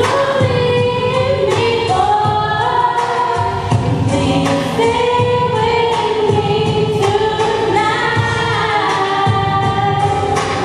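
Girls' vocal group singing sustained chords in close harmony into microphones, the chords shifting every second or two under a lead voice, over a steady low pulse.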